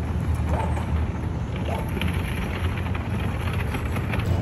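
City street ambience: a steady low rumble of traffic with faint passing voices.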